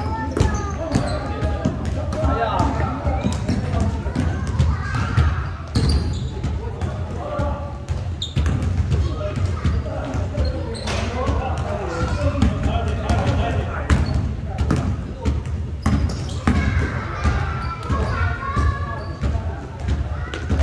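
A basketball bouncing again and again on an indoor gym court during a pickup game, with players' voices calling out throughout. The sounds carry in a large hall.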